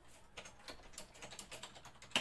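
Faint typing on a computer keyboard: a run of soft, irregular keystrokes.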